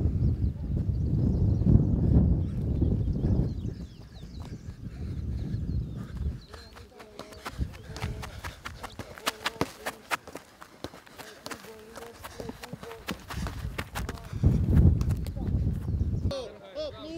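A rapid series of sharp light taps as a footballer's feet strike the ball and the grass during a quick-feet dribbling drill. The taps run thickly through the middle of the stretch. A low rumble fills the first few seconds and returns briefly near the end.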